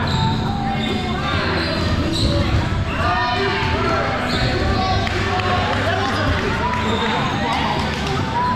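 Foam dodgeballs thumping and bouncing on a hardwood gym floor amid players' shouts and calls during play.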